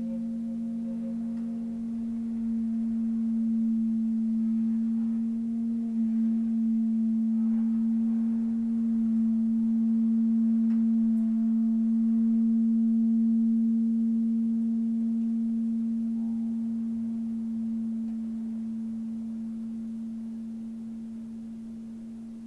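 Electric guitar holding one long, steady low note with faint overtones above it. The note swells in the middle and slowly fades away near the end.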